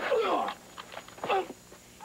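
Men's short shouts of effort as two actors grapple on a cliff edge: a cry that falls in pitch at the start, then a shorter one about a second later.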